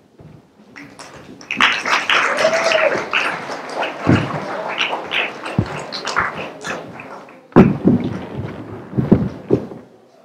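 Footsteps, taps and knocks of people and set pieces moving on a stage during a blackout scene change, with a short squeak about two and a half seconds in. Heavy thuds come about four, five and a half, seven and a half and nine seconds in, the one near seven and a half seconds the loudest.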